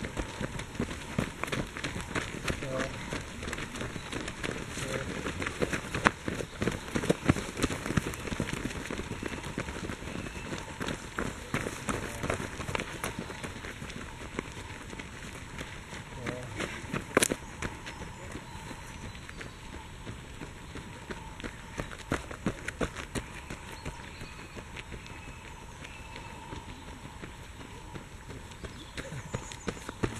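Runners' footfalls thudding and crunching on a dry-leaf-strewn dirt trail as they pass one after another, thicker in the first half. One sharp snap stands out partway through.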